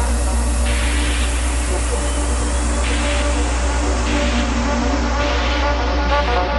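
Techno music in a breakdown: a steady, deep sub-bass drone under held synth tones, with short hissy noise swells coming every second or so and no clear kick-drum beat.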